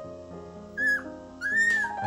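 A puppy whimpers twice: two short, high whines about half a second apart, the second rising and then falling, over soft piano background music.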